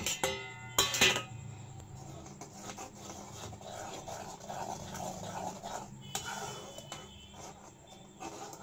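A metal spoon stirring thick tamarind chutney in a kadhai, scraping and rubbing against the pan, after a sharp clink of metal on the pan about a second in.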